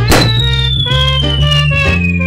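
Logo jingle music for a comedy series' animated ident: a sudden hit right at the start, then a high whistle-like tone gliding slowly downward over changing bass notes.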